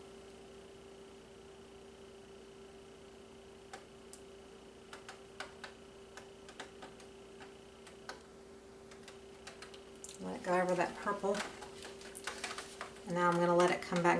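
Faint, irregular light clicks and taps from a paint-covered canvas being tilted in gloved hands over a foil drip pan, over a steady low hum.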